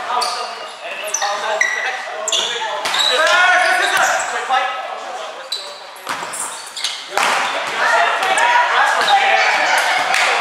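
Indoor volleyball rally: players' shouts and calls echoing in a gym, with a few sharp slaps of hands and arms striking the ball.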